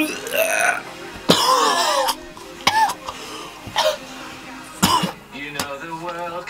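A young man's sighs and short throaty vocal noises, a string of separate outbursts with the longest and loudest about a second in, a reaction of disgust.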